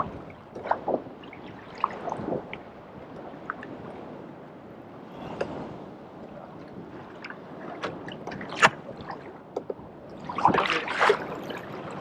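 Choppy sea water lapping and splashing against a Hobie Revolution 13 kayak's hull, with scattered small knocks and ticks. There is a louder splash about ten and a half seconds in.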